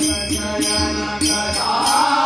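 Devotional group singing to tabla: the tabla plays a steady rhythm of ringing treble-drum strokes and deep bass-drum strokes, with high metallic jingles on the beat. Male voices singing in chant style come in strongly about one and a half seconds in.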